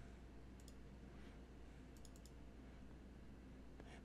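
Near silence: faint room tone with a few soft computer mouse clicks, one about half a second in and a quick run of three or four about two seconds in.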